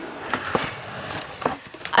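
Handling noise: rustling with a few light knocks, about four spread through the two seconds.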